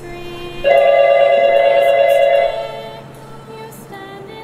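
Cordless home phone ringing with a melodic electronic ringtone: steady synthesized notes, one long note held for about two seconds starting just under a second in, then fading.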